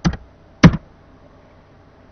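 Computer keyboard keystrokes: a quick pair of key taps right at the start, then one louder key strike about two-thirds of a second in.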